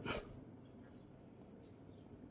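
Faint background with a few brief, high bird chirps, one about halfway through.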